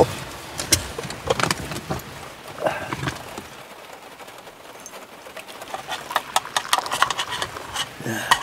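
Scattered light clicks and knocks of things being handled inside a car as tea is got out to share, busiest in the first few seconds and again near the end, with rain pattering faintly on the car.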